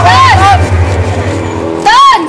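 A person crying out in short, high, wavering wails over a steady low drone.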